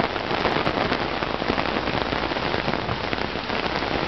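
Heavy rain pouring steadily, with many sharp ticks of close drops striking.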